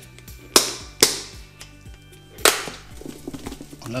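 Lid of a clip-lock plastic food box being pressed on and snapped shut: three sharp plastic snaps, two about half a second apart near the start and a third about two and a half seconds in.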